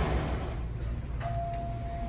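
A low steady rumble, then a little over a second in a single steady electronic beep tone starts and holds at one pitch.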